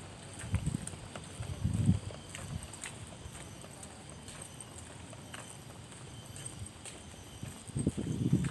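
Footsteps of a person walking on a concrete path, with two dull low thumps on the microphone in the first two seconds.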